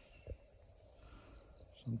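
A steady, high-pitched insect chorus, one unbroken shrill tone, with a single faint click about a quarter of a second in.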